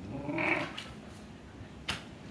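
A Shiba Inu gives a short growl, about a second long, while play-wrestling with another Shiba. A single sharp click follows near the end.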